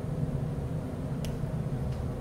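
Steady low background hum of room noise, with a faint tick about a second in.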